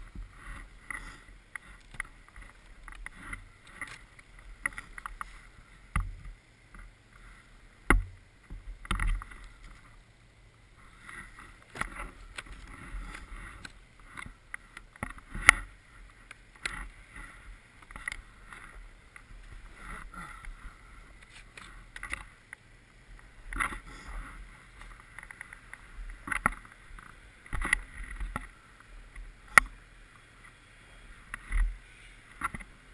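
Gloved hands digging and scraping deep snow away from a stuck snowmobile: irregular crunching and scooping, broken by sharp knocks and thumps of hands and body against the sled.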